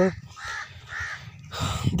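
Two short, harsh bird calls about half a second apart, followed by a burst of rustling near the end.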